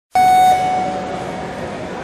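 A single short buzzer tone, the start signal for a show-jumping round, sounding for about a third of a second and then dying away in the long echo of a large indoor arena.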